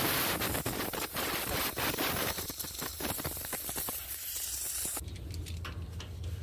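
Compressed-air blow gun hissing into a semi-trailer wheel bearing held in a rag, blowing the old grease out of it. The hiss cuts off about five seconds in.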